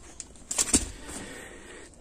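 Small metal kit parts on a packaging card being handled: a short clatter about half a second in, then a rustle that fades away.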